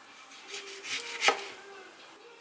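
A kitchen knife slicing through a lime and coming down onto a plastic cutting board, ending in one sharp knock about a second and a quarter in.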